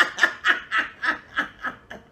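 A man laughing hard in a quick run of repeated bursts, about five a second, trailing off near the end.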